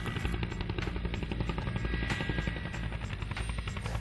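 Helicopter flying in low, its main rotor beating in a rapid, steady pulse.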